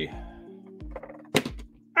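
Soft background music with sustained tones, over a few low bumps and one sharp knock about a second and a half in, as a painted miniature is handled and set down on a desk.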